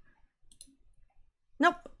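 A faint click about half a second in, a keyboard or mouse press advancing the presentation slides, in a small quiet room; a short spoken word follows near the end.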